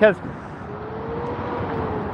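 Freeway traffic heard from an overpass: a steady rush of tyres and engines that slowly grows louder, with a faint drawn-out hum that rises slightly and then holds.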